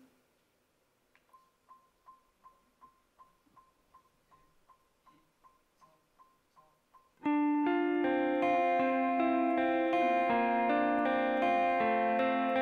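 Faint, evenly spaced click-track ticks, about two and a half a second, count in the song; about seven seconds in a band starts abruptly, with clean electric guitar and bass guitar played live.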